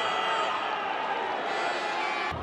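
Steady stadium crowd noise, an even background din with no single voice standing out.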